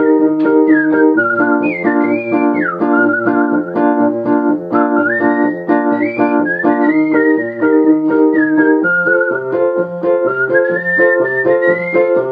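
A person whistling a melody that slides up and down between notes, over a Wurlitzer electric butterfly baby grand piano playing steady, rhythmic chords.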